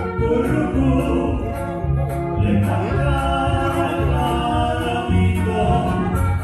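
Men singing a regional Mexican song into microphones through a PA, over amplified accompaniment with a bass line stepping between held notes and a light steady beat.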